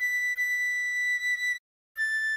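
Soprano recorder tone holding one high, pure note (B) for about a second and a half, over soft sustained lower chord tones that stop about halfway through. After a brief silence a slightly lower note (A) begins just before the end.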